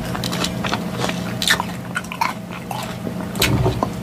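Close-miked chewing of a mouthful of green salad with French dressing: irregular, wet crunching of lettuce. A fork clinks against the glass bowl a little after three seconds in.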